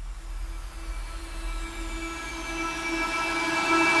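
Electronic music intro: a held synth pad and a noise swell fading in from silence and growing steadily louder, with a faint falling high whistle, building up to the vocals.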